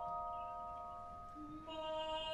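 Opera recording: bell-like celesta notes ring and slowly fade, then a male voice enters on a long held note near the end.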